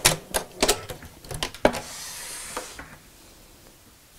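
A domestic sewing machine finishing a seam through quilted fabric and bias binding: a few irregular clicks as the last stitches are made and the machine stops, then a short rustle of the fabric being pulled away.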